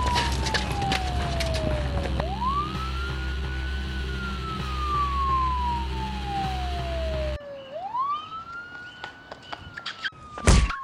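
Siren wailing: the pitch sweeps up quickly and then falls slowly, one cycle about every five and a half seconds. Underneath is a steady low rumble that cuts off suddenly about seven seconds in, with a few clicks and knocks near the start and near the end.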